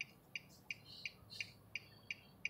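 A car's turn-signal indicator ticking faintly and evenly, about three clicks a second, while signalling a turn.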